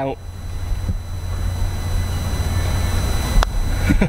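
A single sharp click of a putter striking a golf ball about three and a half seconds in, over a steady low rumble.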